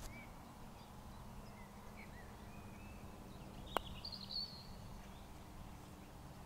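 A single sharp click of a putter striking a golf ball, a little past halfway through, against a quiet outdoor background with faint bird chirps before and after it.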